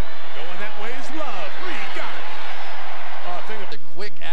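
Game-broadcast sound: men's voices talking indistinctly over a steady crowd murmur.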